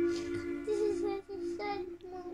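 A young child crying in a drawn-out, wavering voice, with a steady held musical note underneath.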